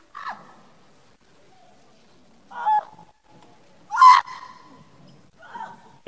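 A woman's short, high-pitched shrieks, four of them spread over a few seconds, the loudest about four seconds in.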